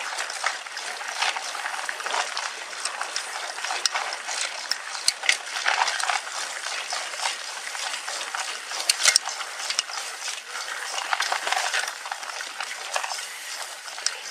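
Mountain bike rolling fast over a leaf-strewn forest dirt trail: steady tyre noise with a constant clatter of clicks and rattles from the bike over the bumps, the sharpest knocks about five and nine seconds in.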